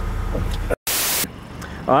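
A steady low rumble that cuts off abruptly under a second in, followed by a moment of silence and a short burst of loud hiss, then quieter background; a man says "all right" at the end.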